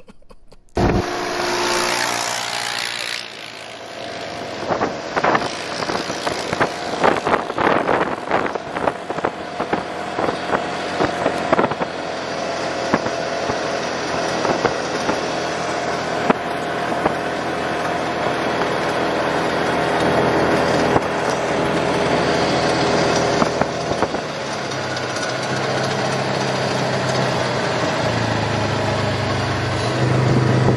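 Side-by-side UTV engine running as the machine drives over rough ground, with a run of knocks and rattles from bumps, thickest between about five and twelve seconds in.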